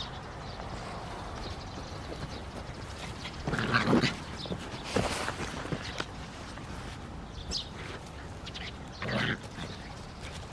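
San'in Shiba puppy vocalizing in short bursts while it runs about, the loudest about three and a half seconds in and another near the end.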